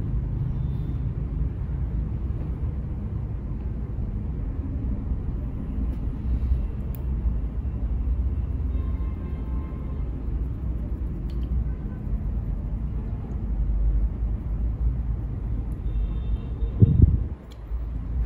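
Steady low background rumble with a faint hiss, with a brief louder sound about a second before the end.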